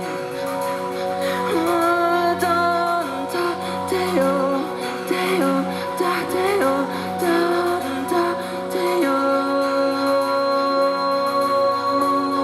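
Live pop music in a concert hall: an instrumental passage led by synth keyboard, with sustained chords and a melodic line moving over them. A higher held note joins about nine seconds in.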